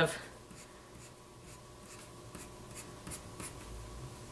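Pencil scratching on paper in a run of short, light strokes, about three a second, as a row of eyelashes is drawn.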